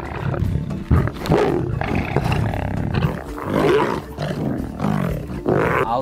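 Lions growling and roaring at each other as they fight, a run of rough calls coming every second or so.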